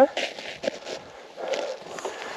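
Low, indistinct talk with a few soft clicks and rustles.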